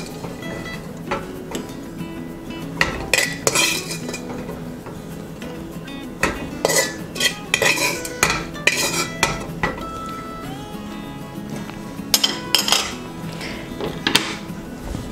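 Metal spoon scraping and clinking against a bare metal wok as raisins are scooped out, in a dozen or so separate strokes with short pauses between.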